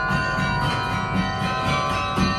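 Carillon bells playing music: struck notes ringing on in long, overlapping tones, with new strikes at the start.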